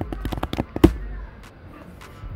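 Computer keyboard typing: a quick run of key clicks, ending with one louder keystroke about a second in.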